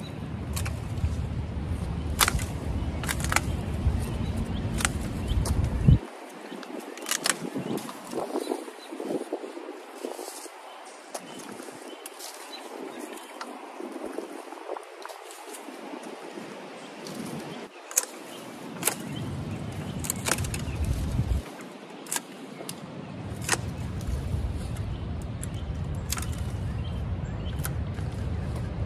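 Long-handled loppers cutting through woody hydrangea canes, a string of sharp clicks scattered through the stretch. Wind rumbles on the microphone at times.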